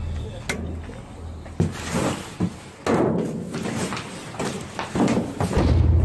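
Cardboard boxes and bagged trash rustling and knocking inside a metal dumpster as it is rummaged through, with a few thumps, the sharpest about three seconds in.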